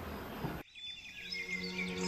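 Faint room tone that cuts off about half a second in, followed by birds chirping over background music fading in.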